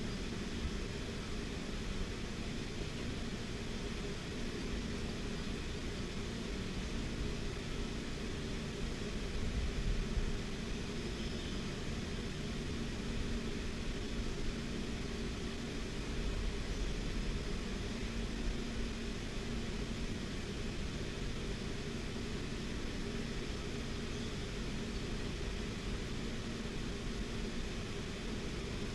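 Electric fan running: a steady hum with an even airy hiss.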